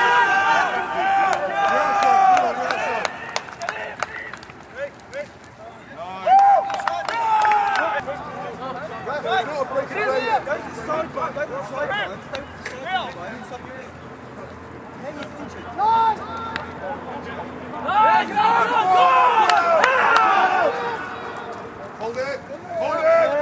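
Men shouting and calling out across a rugby field, in loud bursts at the start, a few seconds later, and again near the end, over a low background of crowd chatter.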